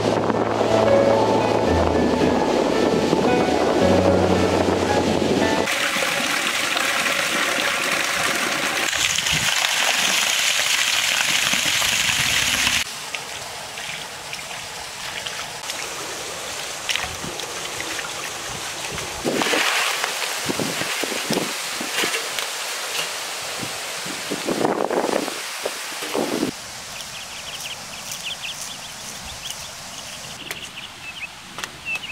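Music with a stepping bass line for the first few seconds, then a stretch of steady rushing water. After that come irregular splashes and sloshing as fish are washed by hand in a pot of water.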